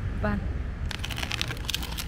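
Handling noise: a quick run of crunching, crackling clicks in the second half as the car AC compressor is shifted about on a cardboard sheet by hand.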